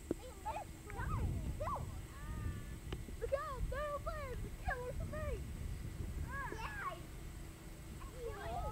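Distant voices calling out and chattering, too faint to make out words, over a low rumble.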